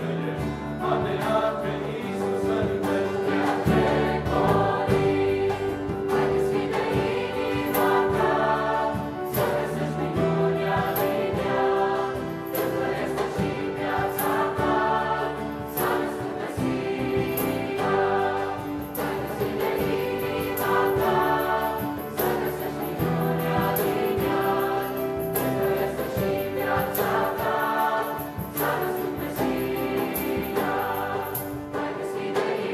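A choir singing a Christian Christmas carol (colindă), with long held chords that change every second or so.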